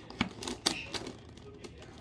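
Plastic twisty puzzle cube being turned by hand: several sharp, irregular clicks and clacks.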